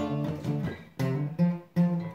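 Acoustic guitar strumming chords: three strums about a second apart, the sound dropping away briefly before the second and third as the strings are damped.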